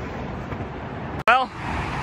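Steady noise of highway traffic going by, broken by a sharp click a little over a second in.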